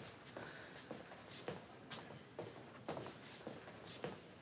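Faint footsteps and shuffling on a hard floor: a handful of soft, irregularly spaced steps.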